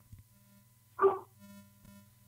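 A dog barks once, sharply, about a second in, heard over a phone line, with a faint steady hum underneath.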